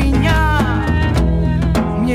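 Live acoustic reggae-style song: a woman singing with vibrato over strummed acoustic guitar and a steady hand-drum (djembe) beat.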